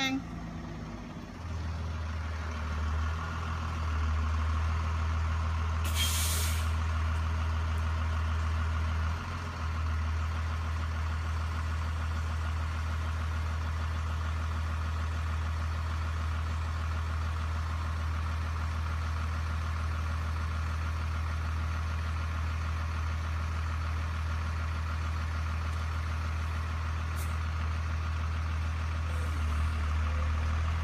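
Diesel school bus idling at its stop, a steady low drone, with a short sharp air-brake hiss about six seconds in.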